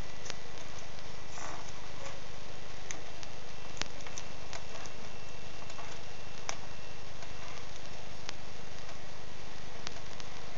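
Electrical tape being pulled off the roll and wrapped around a spliced cable joint: scattered crackles and sharp clicks from the tape and cable handling, over a steady electrical hum.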